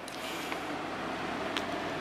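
Steady background hiss with a low, even hum, with a faint click about one and a half seconds in.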